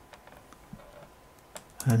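A few faint, scattered computer keyboard keystrokes as a terminal command is typed to clear the screen.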